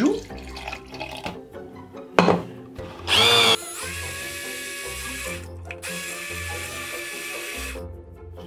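Hand-held immersion blender whirring in a plastic jug of chocolate and hot milk, working the two into an emulsion. A knock comes about two seconds in; the motor starts about a second later with a brief louder burst, then runs steadily for about four seconds with a short break midway, and stops near the end.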